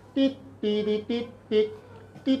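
A person's voice humming about four short, steady notes without words.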